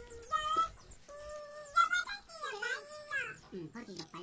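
A young child's high-pitched voice making drawn-out wordless calls, three in a row, some held on one pitch and some sliding up and down.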